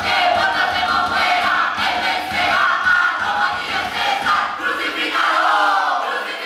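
A stage chorus of many voices shouting and chanting together, with a low rumble underneath that drops out about five seconds in.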